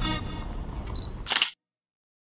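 A camera shutter clicks once, sharp and loud, about one and a half seconds in, just after a short high tone, and the sound cuts off to dead silence; before it, background music plays over faint street ambience.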